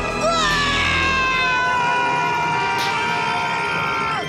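A cartoon toddler's long, high-pitched scream. It starts abruptly with a quick glide, holds one note that sinks slightly for over three seconds, then breaks off, over background music.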